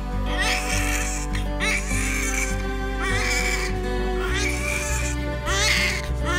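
Newborn baby crying in short, wavering wails, about five in a row, over background music of steady held notes whose bass changes about four seconds in.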